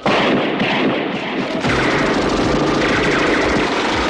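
Film gunfire: a sudden loud blast of shots just after the start, then dense, continuous shooting and commotion.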